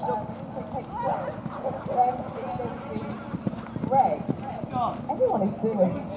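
Hoofbeats of a pony cantering on a sand arena, with people's voices talking over them.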